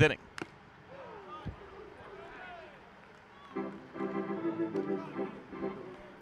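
Ballpark organ music: held organ chords come in about halfway through, over faint background sound before them.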